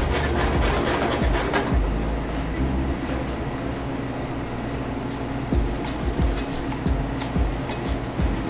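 Background music with steady held low tones. Over it come light crackles and pops from salmon simmering in reducing white wine in a frying pan, most in the first two seconds and again near the end.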